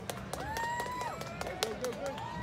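People's voices calling out in two long, drawn-out shouts, one after the other, with sharp clicks scattered through and a low outdoor rumble underneath.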